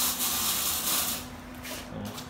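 Welding hiss and crackle over a steady electrical hum; the hiss fades about halfway through.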